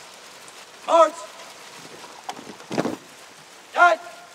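Fountain water splashing steadily, with two short shouted drill commands from one voice, about a second in and near the end, and a brief sharp noise between them.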